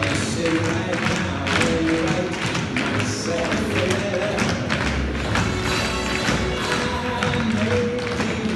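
Several dancers' tap shoes striking a stage floor in quick rhythmic clicks, over music playing.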